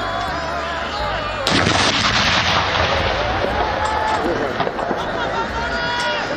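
An artillery field gun firing a single salute round about a second and a half in: a sudden loud report that rumbles away over the next second or two.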